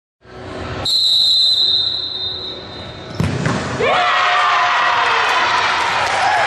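A referee's whistle gives one long blast, then the ball is struck with a thud a little past halfway. Shouting and cheering from players and spectators follow.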